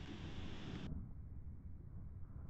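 Faint steady background noise: a low rumble with a soft hiss, the higher hiss dropping out about a second in.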